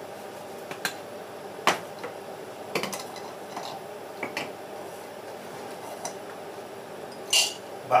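Light clinks and knocks of kitchenware on a counter as a small food-chopper bowl is handled, with a brief louder rattle near the end.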